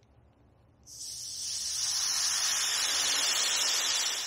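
Air hissing out of a bicycle tyre's valve as the valve pin is pressed in by fingertip to let some pressure out. It starts about a second in and holds steady.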